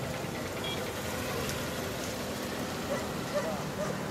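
Outdoor street ambience: a steady hum of traffic with faint voices of people talking.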